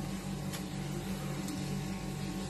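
A steady low mechanical hum, like a running household appliance or fan, with two faint clicks about a second apart.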